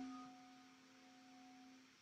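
A piano chord dying away after it was struck: its held tones fade steadily and are gone by near the end, leaving near silence.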